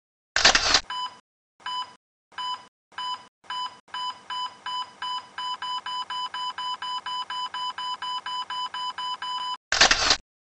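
Electronic beeps from an animated intro's sound effect: a short, loud burst of noise, then beeps that start about a second apart and speed up to about four a second, cut off by a second loud burst of noise near the end.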